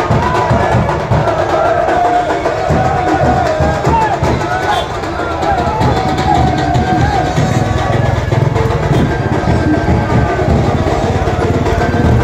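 Drums beating fast and steadily under a crowd's shouting and chanting.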